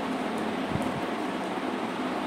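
Steady room noise with a low hum, with a few faint light clicks and a soft thump about three-quarters of a second in as a hand touches the tarot cards on the table.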